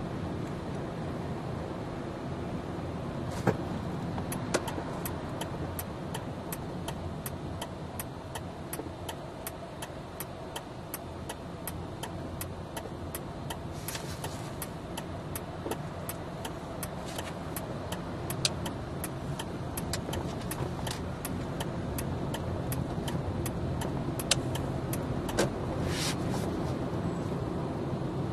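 Car driving through town, heard from inside the cabin: steady engine and road rumble. A regular clicking of about two to three clicks a second runs through most of it, with a few louder clicks.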